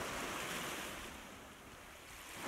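Gentle waves washing on a shore, a soft steady hiss that slowly fades.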